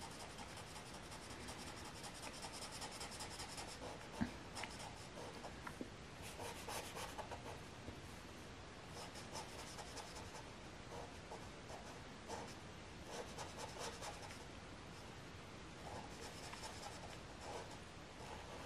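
Black felt-tip marker scribbling on paper in faint, repeated short strokes as it colours in small dark areas. There is a light tap about four seconds in.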